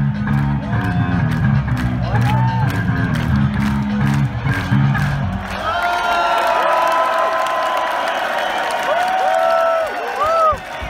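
Electric guitar and bass guitar playing live through a stadium PA, stopping about halfway through as the piece ends. A large crowd then cheers, with whistles and whoops.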